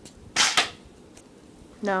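A single short, sharp puff of breath blown through a homemade paper tube, firing a paper dart, about half a second in.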